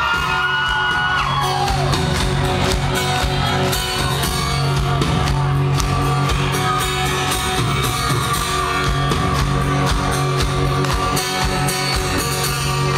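Live rock band playing the opening of a song: acoustic guitar, drums, bass and keyboard, heard through a club's room sound. Audience whoops and whistles fade out in the first two seconds.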